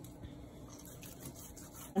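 Faint scraping of a kitchen knife sawing through salted mackerel on a plastic cutting board.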